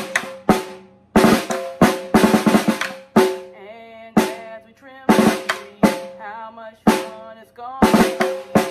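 Snare drum played with sticks in a repeating groove: sharp single hits mixed with quick clusters of strokes, the drum ringing on between hits.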